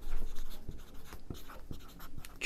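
Felt-tip marker writing on a whiteboard: a run of short, irregular scratchy strokes as letters are written.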